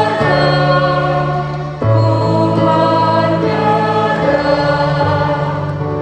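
A congregation singing a hymn, accompanied by an electronic keyboard playing sustained chords that change every second or two.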